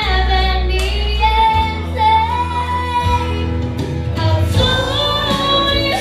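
A young girl singing karaoke into a microphone over a PA, holding long sustained notes above a recorded backing track with a steady bass line.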